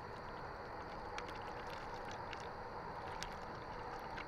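Water poured from a plastic water bottle into a foil MRE drink pouch: a faint, steady trickle with a few small clicks.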